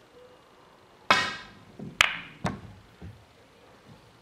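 Snooker shot: the cue strikes and the balls clack together, a loud ringing clack about a second in followed by two sharper clicks over the next second and a half, with a few duller knocks between and after.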